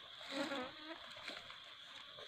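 Steady high-pitched drone of forest insects, with a short wavering pitched call about half a second in.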